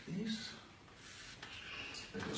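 A short murmur of a man's voice, then faint rubbing and rustling as hands handle things.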